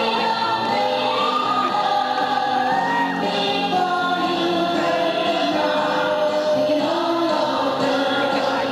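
Three women singing a song together, with long held notes.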